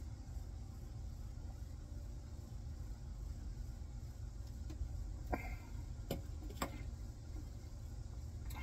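Quiet outdoor background with a steady low rumble, and a few short sharp taps in the second half as a stemmed beer glass is set down on a glass tabletop.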